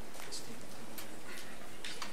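Meeting-room background with scattered faint ticks and rustles, irregular, about one or two a second.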